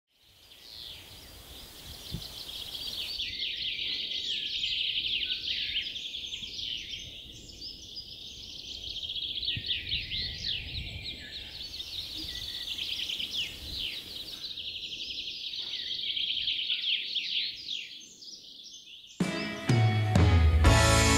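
A dense chorus of small songbirds chirping and trilling, many short quick calls overlapping without a break. Guitar music comes in loudly about a second before the end.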